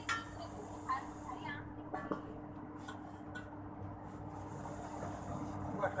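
Light metallic clicks and knocks from steel wheelchair frame parts and hand tools being handled during assembly, a few sharp ones in the first couple of seconds, over a steady low hum.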